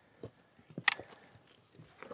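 Mostly quiet, with a few short sharp clicks, the loudest about a second in.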